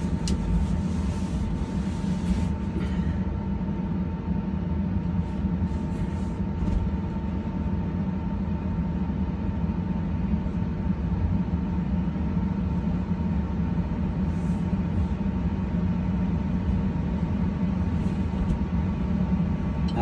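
A steady low rumble and hum inside a Tesla's cabin, with a thin steady tone running through it. A few light knocks come in the first three seconds.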